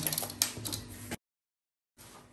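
A few light clicks and faint rustling as a hand handles brown pattern paper. Just after a second in, the sound cuts off to dead silence.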